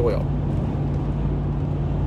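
Steady low drone of road and engine noise inside the cabin of a moving vehicle.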